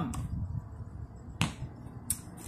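A single sharp click about one and a half seconds in, as a plastic squeeze bottle is set down on a hard surface, over faint handling noise.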